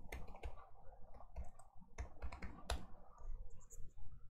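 Faint keystrokes on a computer keyboard: a handful of separate, irregularly spaced clicks as a short command is typed.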